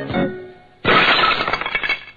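Background music fades out, then about a second in a loud, dense burst of breaking, shattering noise lasting about a second and stopping abruptly: a video-transition sound effect.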